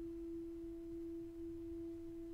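A symphony orchestra holding one soft, sustained note. It is almost a pure tone, with nothing else sounding under it, in a quiet passage of the music.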